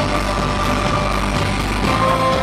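Live band music, loud: a chord held out over a steady low drone, with no singing, changing to new notes at the very end.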